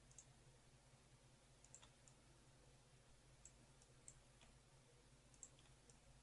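Near silence, broken by faint, irregular computer mouse clicks, roughly one or two a second, as anchor points are placed along a selection outline. A low steady hum of room tone runs underneath.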